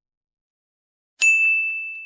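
Silence, then about a second in a single bright bell-like ding that rings on one high tone and fades slowly: the end-card chime sound effect.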